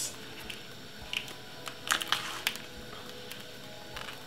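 Banana leaf rustling and crackling in gloved hands as it is folded into a parcel, a few short crackles with the loudest about two seconds in, over quiet background music.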